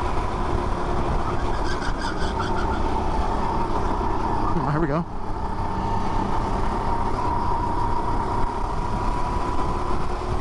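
Go-kart engine running at racing speed, picked up by an onboard camera, with a steady engine note that rises slightly in the second half, among other karts on track.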